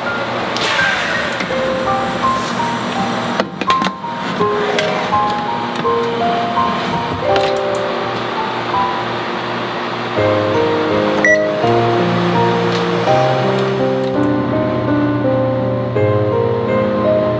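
Gentle instrumental background music: a melody of held notes, joined by lower bass notes and growing a little louder about ten seconds in. A couple of short knocks sound under it about four seconds in.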